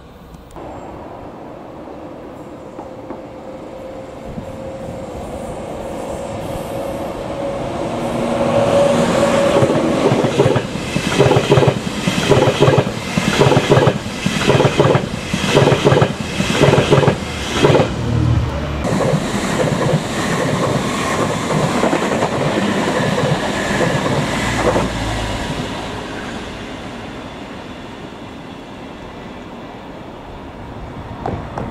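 ICE high-speed train passing close by. Its hum swells as it approaches, then comes a regular, evenly spaced wheel clatter over rail joints and points through the middle. The sound dies away over the last few seconds.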